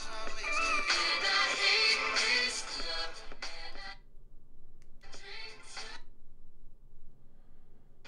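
Pop song with singing playing from a smartphone's speaker, paused from a Bluetooth media-control button: the music cuts off about four seconds in, plays again for about a second, then stops again.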